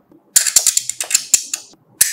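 A blade scraping along a smartphone's plastic side frame: a quick run of scratchy clicks lasting about a second and a half.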